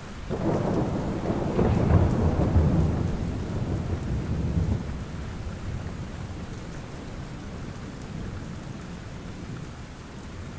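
Recorded rain-and-thunder ambience: steady rain falling, with a low rumble of thunder that swells within the first second and rolls away over the next few seconds.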